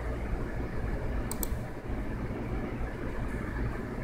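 Computer mouse clicked twice in quick succession about a second and a half in, over a steady low background hum.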